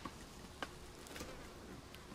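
A few faint light clicks on a wire crate's bars, about one every half second, as a raccoon kit paws at the wire, over faint insect buzzing.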